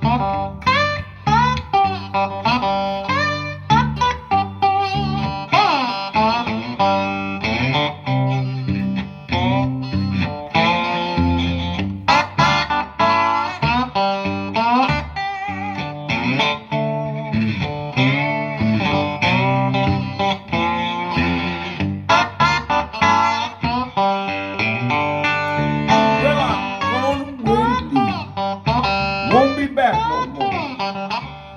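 Solo electric guitar playing a blues figure, single-note lines with some notes gliding in pitch.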